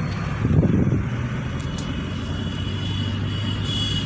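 Hyundai Santro Xing driving along, with its engine hum and road rumble heard from inside the cabin. There is a brief louder rumble about half a second in.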